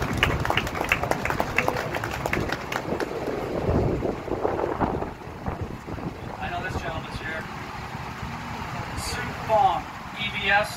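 Scattered clapping from a small crowd, fading out about halfway through, followed by a few short bits of voices.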